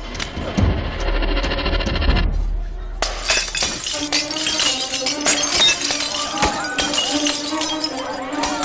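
Glass bottles smashing on a street, many crashes in quick succession from about three seconds in, after a low rumble at the start. Film background music plays underneath.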